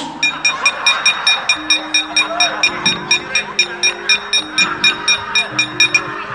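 Javanese gamelan accompaniment at a fast pace, driven by the dalang's kecrek: metal plates struck against the wooden puppet chest, clanking evenly about four times a second. Bronze keyed instruments play a stepping melody beneath.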